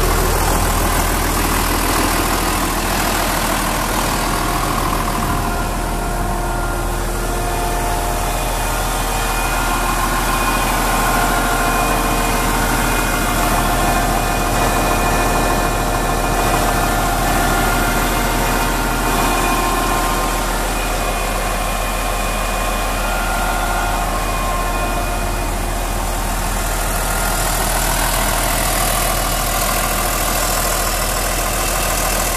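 New Holland farm tractor's diesel engine idling steadily, heard first from inside the cab and then beside the open engine bay.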